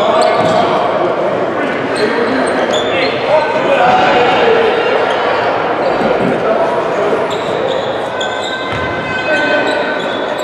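Live basketball play on a hardwood gym floor: the ball bouncing as it is dribbled, short high sneaker squeaks, and indistinct shouts from players and spectators, echoing in the large hall.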